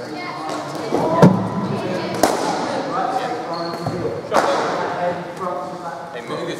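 Cricket ball impacts in an indoor net hall: three sharp knocks of ball on pitch, bat and netting, the first about a second in the loudest and deepest, the others just after two seconds and past four seconds, each echoing in the hall.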